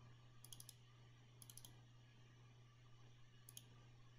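Faint computer mouse clicks in three quick clusters, each like a double-click, over a steady low hum.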